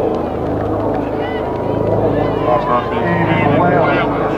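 People talking outdoors, with a steady low hum underneath.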